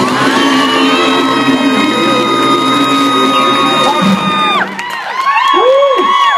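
A male vocal harmony group holds a final chord, with one high voice sustained on top, for about four and a half seconds before cutting off. After it comes a burst of high whoops and cheering from the audience.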